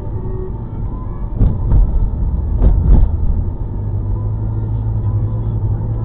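Road and engine rumble inside a moving car, heard through a dashcam. Four thumps in two quick pairs come between about one and a half and three seconds in. After that a steadier low drone holds.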